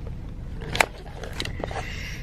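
Steady low rumble of a parked car's idling engine inside the cabin, with one sharp click a little under a second in.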